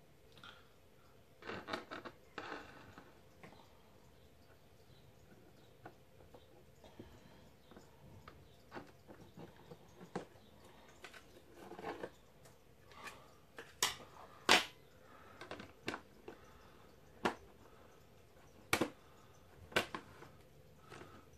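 Handling noise around a large plastic jar: scattered light clicks, taps and rustles as a thin metal tool and hands work at its mouth, with a few sharper knocks in the second half as the black screw lid goes on.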